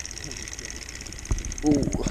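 Spinning fishing reel being cranked steadily on a lure retrieve, a faint fast even ticking, with a single knock just past a second in.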